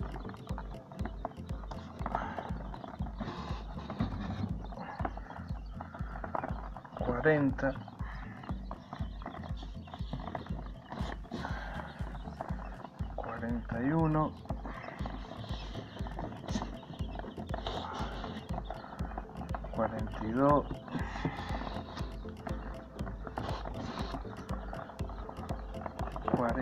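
Newly hatched Chinese painted quail chicks cheeping in a container, with a low voice saying a word about every six or seven seconds as the chicks are counted.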